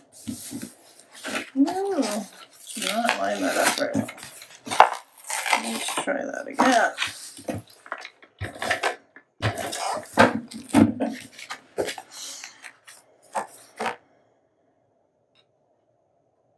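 Cardstock and a hand-held plastic craft tool being handled on a tabletop: a busy run of rustles, scrapes and sharp clacks that stops about 14 seconds in, with short voice-like sounds around two and three seconds in.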